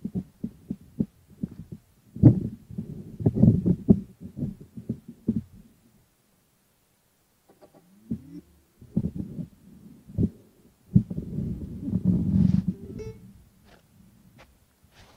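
Uneven low thumps and rumbling on the microphone, in two spells a few seconds long with a quiet gap between, the kind of noise left by wind buffeting or knocks on an outdoor microphone rather than by any sound in the scene.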